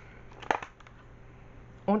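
Empty clear plastic wax-melt clamshell handled in the hand: a few light plastic clicks, the sharpest about half a second in.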